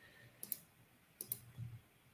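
Faint clicks of a computer mouse, two quick pairs about half a second and just over a second in, as the software's form is operated.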